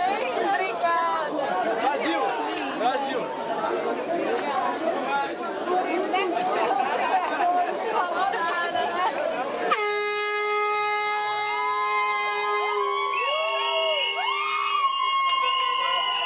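Crowd chatter, then, about ten seconds in, several plastic fan horns (vuvuzela-style) start blowing together in long, steady notes at different pitches, some of them bending up and down.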